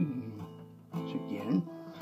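Alvarez acoustic guitar: a chord fades out, then is strummed again about a second in.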